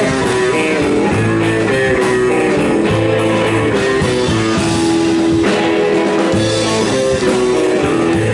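Live band playing an instrumental passage without vocals: a red hollow-body electric guitar and a mandolin strumming over bass notes.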